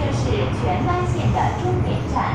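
MTR M-Train carriage running, a steady low rumble from the train under way, with a voice speaking over it.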